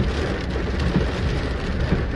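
Heavy rain falling steadily on a car's windscreen and roof, heard from inside the car, over a constant low rumble.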